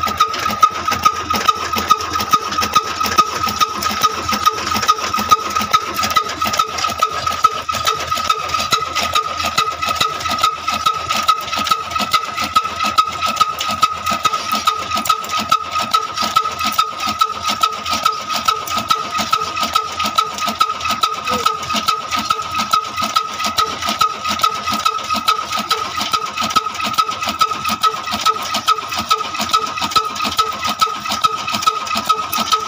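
Old single-cylinder stationary diesel engine running at a steady slow speed, about two sharp knocks a second, driving a chaff cutter that chops green fodder, with a steady high-pitched whine throughout.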